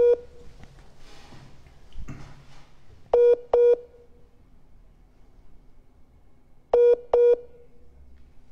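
Telephone ringback tone played over a speakerphone as an outgoing call rings: pairs of short beeps repeating about every three and a half seconds.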